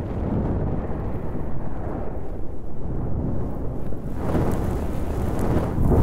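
Outro logo sound effect: a low, steady rumble that swells near the end into a louder, brighter rush.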